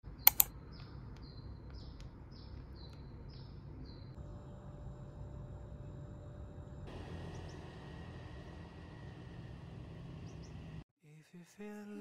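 Room ambience with a steady low hum. Two sharp clicks come just after the start, then a bird chirps repeatedly, about twice a second, for a few seconds. The background changes about seven seconds in and cuts off shortly before music with singing begins near the end.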